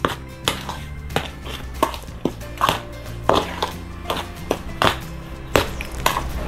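A metal spoon stirring dry flour and cornmeal in a stainless steel bowl, scraping and knocking against the metal in short, irregular strokes about twice a second. Background music plays underneath.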